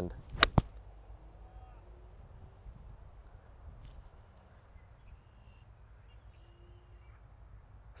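An 8-iron striking a golf ball on a knockdown approach shot: one sharp click about half a second in, followed closely by a second short knock. After that only a faint, steady outdoor background.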